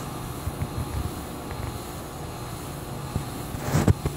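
High Breeze ceiling fan coasting down after being switched off, its slowly turning blades giving a low, steady rumble with a few soft knocks. A brief rushing noise comes near the end.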